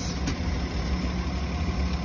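Car engine idling steadily, a low even hum.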